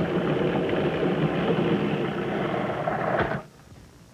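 Countertop food processor motor running steadily as its blade purees strawberries, then switching off about three seconds in.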